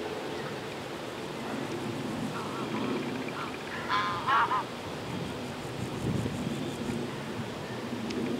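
A goose honking: a quick run of three short calls about four seconds in, over steady background noise.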